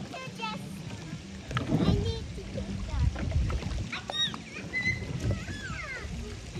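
Water sloshing and splashing in a shallow inflatable pool as a small plastic paddle-wheel boat is pushed and climbed out of, with children's voices and squeals over it.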